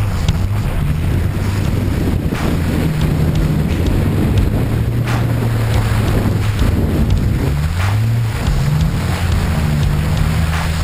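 Off-road truck's engine running as it drives through mud, its pitch rising and falling with the throttle a few times, under heavy wind noise on the vehicle-mounted camera's microphone. A few short knocks come through along the way.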